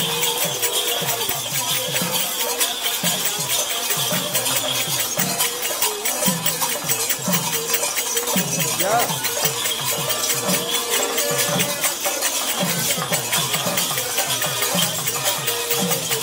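Ritual percussion: continuous rapid jingling of metal bells and rattles over low drum strokes about twice a second, with a steady held tone behind.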